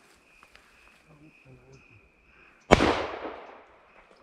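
A single sharp gunshot about two-thirds of the way through, its report dying away over about a second, over a steady high insect buzz.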